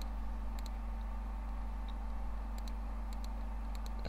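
Steady low electrical hum of the recording setup, with a few faint, scattered clicks at a computer.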